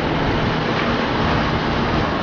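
Kia Rio hatchback running at low speed as it begins reversing into a parking bay: a steady, even noise with no distinct knocks or tones.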